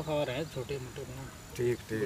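Men's voices talking in short, quiet phrases.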